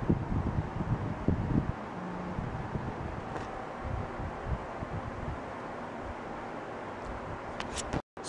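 Camera handling noise, low rumbling knocks and bumps in the first two seconds and a few thumps later, as the camera is moved about, over the steady hiss of electric fans running; a couple of short clicks near the end.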